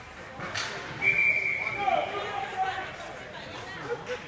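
Hockey referee's whistle blown once, a single steady blast of just under a second about a second in, over voices and chatter in the rink. A sharp knock comes just before it.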